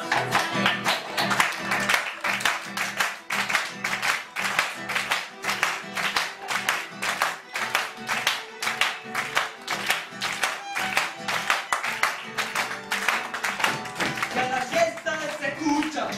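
Instrumental passage of an Argentine folk song played live: acoustic guitar strumming with violin and bombo legüero drum, and audience hand claps keeping a steady rhythm along with the band.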